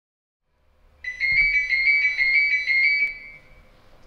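Telephone ringing: an electronic trill that warbles rapidly for about two seconds, then stops.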